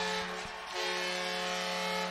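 Arena goal horn sounding a long, steady chord of held tones to mark a goal, over a cheering crowd; the tones shift slightly about three quarters of a second in.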